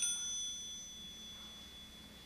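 Low-air warning bell on a firefighter's self-contained breathing apparatus, cutting off just after the start. Its high ringing tone fades away over the next two seconds. The alarm signals that the air cylinder is running low.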